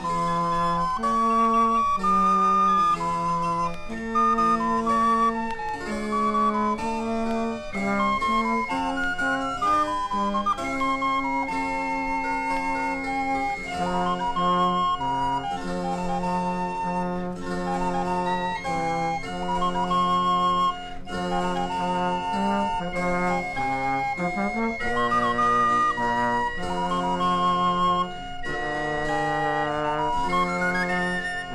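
Instrumental English folk music with no singing: a flute-like wind melody moves over held lower notes from other wind parts, in steady sustained tones.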